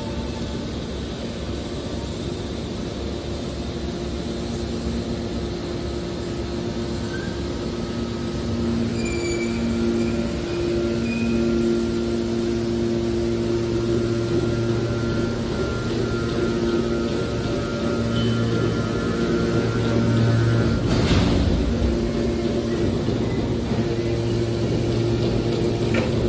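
Hydraulic scrap-metal baler running while it compresses steel cans: a steady machine hum from its hydraulic drive that grows louder about eight seconds in, with a brief louder rush of noise about three quarters of the way through.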